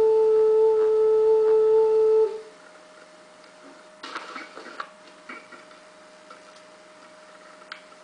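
A handmade clay ocarina being blown on one long, steady note that stops about two seconds in; it is sounded partway through its making to check its voice. Afterwards come a few light clicks as it is handled.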